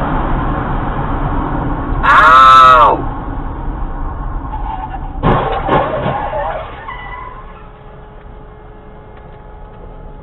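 Road and engine noise inside a moving car. About two seconds in, a person gives a loud, drawn-out cry that rises and falls in pitch, and shorter vocal sounds follow around five to six seconds, after which the road noise grows quieter.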